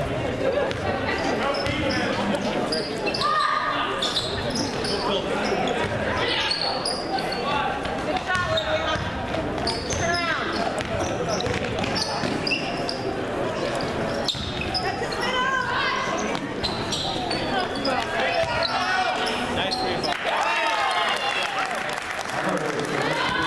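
A basketball bouncing on a hardwood gym floor during play, amid the continuous chatter and calls of players and spectators in a large gym.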